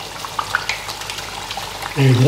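Cauliflower vade patties deep-frying in hot oil in a stainless steel pan: a steady sizzle with scattered small pops and crackles.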